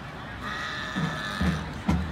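A horn sounding one steady note for about a second, followed by a sharp click near the end.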